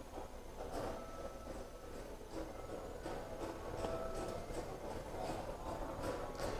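Faint indoor store ambience: a steady low background hum with a few faint, indistinct distant sounds.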